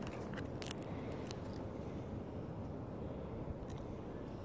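A few faint crackling, crunching clicks from shell peanuts in the first second and a half, then only a low, steady background rumble.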